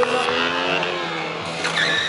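KTM 125 Duke's single-cylinder engine running as the bike circles, its note sinking over the first second. Near the end a tyre starts squealing on the asphalt with a high, steady tone.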